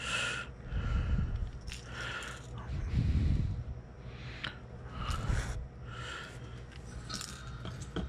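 Handling noise from a crankbait wrapped in mesh being fitted with small metal clips: soft rustles about once a second with a few light clicks.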